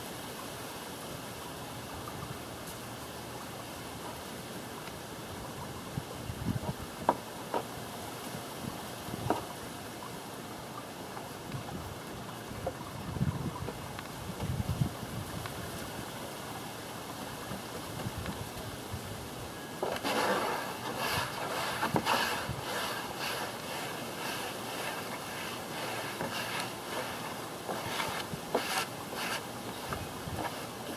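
A paintbrush working two-part epoxy onto the plywood underside of a camper lid, heard from about two-thirds in as a run of short, repeated brushing strokes. Underneath is a steady outdoor hiss with a few low gusts of wind on the microphone.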